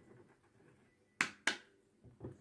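Two sharp snaps from a deck of tarot cards being handled, about a third of a second apart, a little past a second in.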